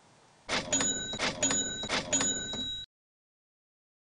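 Cash register sound effect: mechanical clanks, each followed by a ringing bell, three times about three-quarters of a second apart. It cuts off suddenly.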